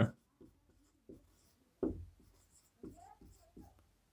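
Marker pen writing on a whiteboard, faint: a few short separate strokes, the loudest a little under two seconds in.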